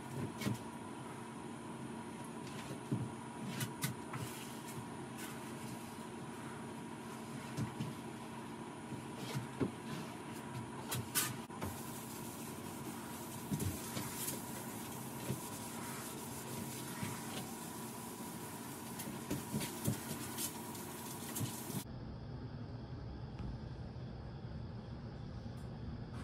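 Steady hum of running shop equipment, with a constant high tone and a lower one under it, and scattered light knocks and handling noises as a finish is wiped onto the ash tabletop with rags. About four seconds before the end the hum and its tones stop, leaving a duller, lower background.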